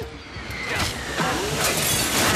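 Cartoon crash sound effect of a body smashing into a tree's branches and foliage, a noisy crash that builds from about half a second in and is loudest near the end.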